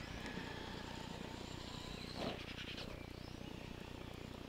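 Traxxas E-Maxx electric RC monster truck running at a distance, its motors and gears whining faintly. About two seconds in there is a louder burst whose pitch falls away, like a throttle blip and let-off.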